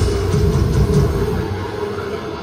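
Death metal band playing live through a venue PA, picked up on a phone: heavy distorted guitars and bass with drums, a held guitar note over a dense low rumble. The cymbal wash thins near the end.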